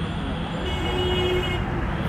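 Road traffic noise with a vehicle horn held for about a second in the middle.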